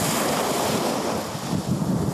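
Sea waves breaking and washing up a sandy shore: a steady rush of surf.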